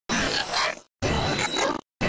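Garbled audio played back at five times speed, in two bursts of about three-quarters of a second each, one second apart, with dead silence between.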